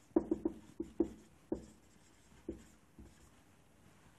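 Marker pen writing on a whiteboard: a quick run of short scratchy strokes and taps of the felt tip on the board, then two more spaced-out strokes.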